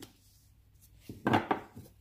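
Tarot cards being handled on a cloth-covered table: a small click, then about a second in a quick cluster of knocks and rustles as a card is laid down and the deck is handled.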